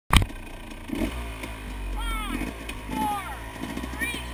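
Enduro dirt bike engine idling steadily at a standstill, with a sharp click right at the start.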